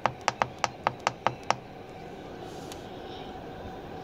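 A hotel room heating-and-cooling wall unit's control panel beeps with each rapid press of the temperature-down button, about nine short beeps in quick succession, lowering the setpoint from 90. The beeps stop about a second and a half in, leaving the unit's fan running steadily in heating mode.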